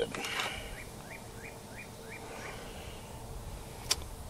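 A bird in the background calls a short chirp about six times, roughly three a second, over a faint steady hum. Small handling noises come at the start, and a sharp click comes near the end.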